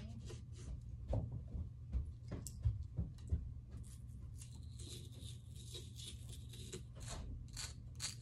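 Small plastic digging tool scratching, picking and tapping at a crumbly sand-filled dig bar, in scattered short scrapes and clicks, with a denser run of scraping in the second half.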